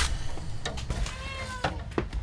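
A long-haired domestic cat gives one drawn-out meow about a second in, its pitch rising and then falling. A few light knocks sound around it.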